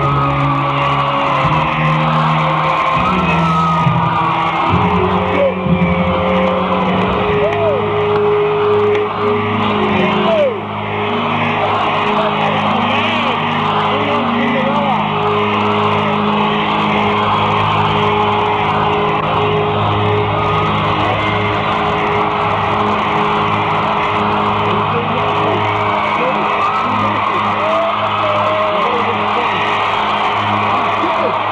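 Live arena rock concert audience recording: sustained keyboard chords ring under a cheering, whooping crowd between songs. Short whistles and shouts rise out of the crowd, and the sound dips briefly about ten seconds in.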